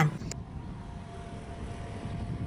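Low, steady outdoor background rumble with a faint steady hum running through it, and a small click shortly after the start.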